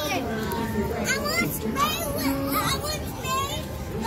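Many children's voices chattering and calling out at once, overlapping without a break.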